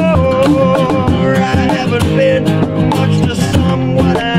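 Acoustic band playing live: two acoustic guitars strummed, a cajón keeping a steady beat, and a male lead voice singing over them.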